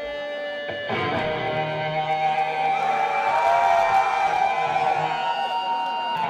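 A rock band playing live through amplifiers: held electric guitar notes ringing and wavering, growing louder about a second in.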